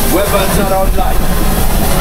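Voices talking over a loud, steady low rumble inside the Millennium Falcon ride's cockpit simulator.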